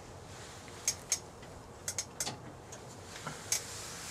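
Scattered light clicks and taps, about six in all, of hands and metal parts being handled at a wood lathe, over a faint steady hiss.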